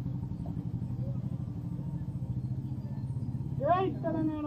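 Steady low drone of an idling engine, running evenly with a fast regular pulse. A brief voice rises near the end.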